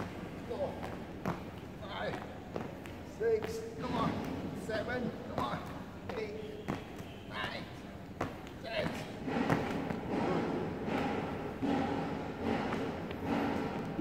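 Sneakers landing on a tiled hall floor in scattered thuds as a boy jumps through a footwork drill, mixed with indistinct voices.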